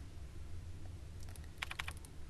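A quick run of about four computer mouse clicks near the end, over a steady low hum.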